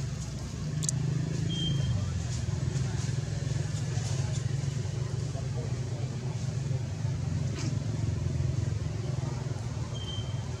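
Low, steady hum of a motor vehicle's engine running, which swells about a second in and then holds. A brief high chirp sounds about one and a half seconds in.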